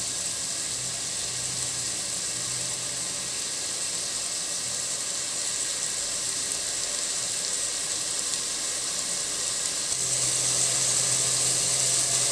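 Green peas sizzling in hot oil in a pot over a gas flame: a steady, even hiss with no stirring.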